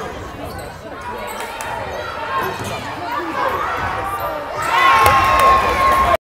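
A basketball dribbled on a hardwood gym floor, with sneakers squeaking and players and spectators calling out, the voices growing louder near the end.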